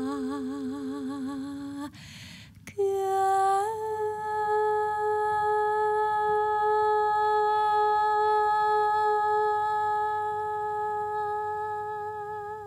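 A woman singing the long closing notes of a Yunnan folk song. A held note with vibrato breaks off about two seconds in, followed by a short breath. A new note then slides up and is held steadily for several seconds, and vibrato returns near the end.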